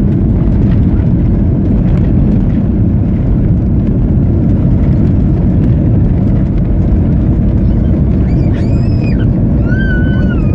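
Cabin noise of a Boeing 737-900ER on its landing rollout: a loud, steady low rumble of the engines and the wheels on the runway as the jet slows.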